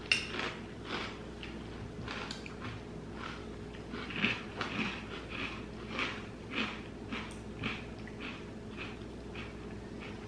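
Mouths chewing crunchy sweetened corn-puff cereal with marshmallows, in short crunches about twice a second. A metal spoon clinks against the cereal bowl right at the start.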